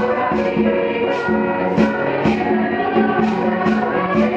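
Middle school choir singing with accompaniment, held chords, over a bright percussive beat of about two hits a second.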